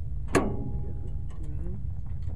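A single sharp metallic clank of a steel pin and stabilizer arm against the steel bracket of a draper header transport axle, ringing briefly afterwards, followed by a few faint ticks over a steady low rumble.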